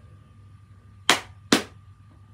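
Two sharp clicks about half a second apart, over a steady low hum and a faint high tone.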